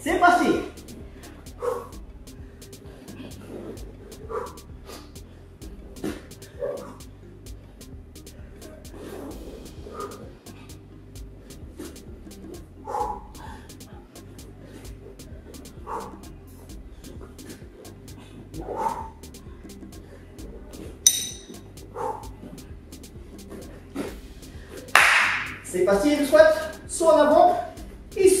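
Brief vocal sounds from a man every few seconds, heard over a steady low hum and faint rapid ticking. A loud breathy rush comes near the end.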